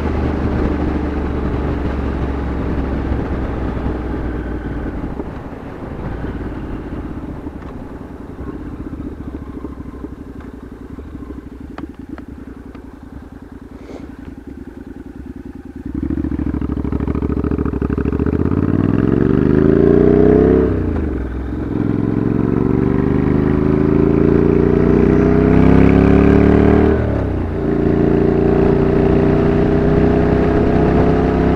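Motorcycle engine heard from the rider's seat. It eases off for several seconds, then about halfway through it accelerates hard, rising in pitch. The revs drop briefly at two gear changes before it settles to a steady cruise.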